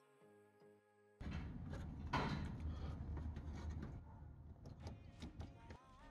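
Soft background music, broken off about a second in by several seconds of close handling noise with scattered light clicks as a battery-tray bolt is worked loose by hand from the fender; the music comes back near the end.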